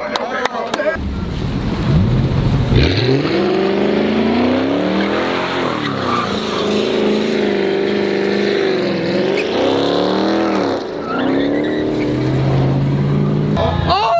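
Chrysler 300 sedan doing a burnout: the engine revs up about a second in and is held high, rising and falling, with the spinning rear tyres screeching and hissing against the asphalt from about three seconds. The revs drop briefly twice near the end, then climb again.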